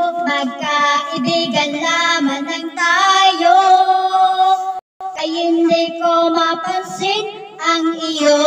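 A woman singing into a handheld microphone over backing music, holding long, wavering notes. The sound cuts out completely for a moment a little before halfway through.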